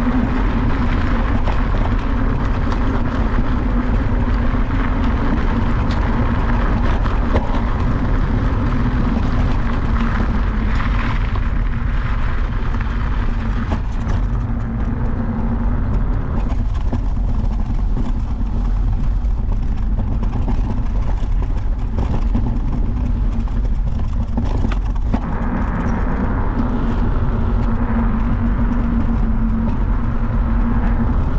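Continuous riding noise from a 48 V, 2500 W electric scooter under way: a steady low rumble with a low hum that fades in the middle and comes back near the end.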